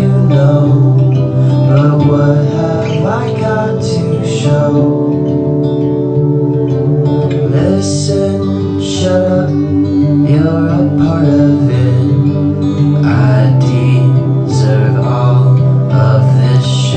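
A song played on acoustic guitar with a singing voice.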